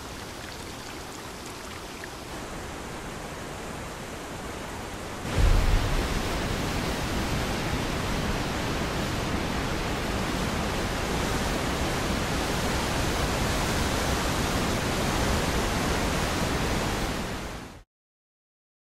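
Waterfall: water pouring over a cascade, a steady rush. About five seconds in it becomes much louder and deeper, then cuts off just before the end.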